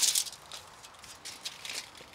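A brief rustle and rattle right at the start, then quiet with a few faint scattered clicks and ticks, as a person moves about in work clothes and a tool belt.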